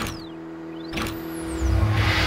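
Sound effects of an animated logo intro: two sharp hits about a second apart with sweeping whooshes over a held low tone, then a deep rumble swelling up near the end.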